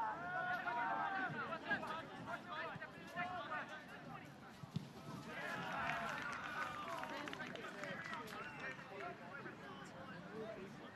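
Faint overlapping shouts and chatter of players and spectators at an outdoor soccer match, with a single thump about halfway through.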